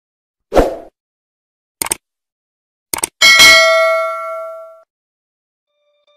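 Intro sound effect: a sharp hit, a few quick clicks, then a bright metallic bell-like ding a little past three seconds in that rings out and fades over about a second and a half.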